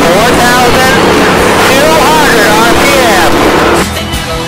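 Stock car engine heard from inside the cockpit, running loud and steady at speed on the track, with a voice rising and falling over it. The sound cuts off suddenly just before the end.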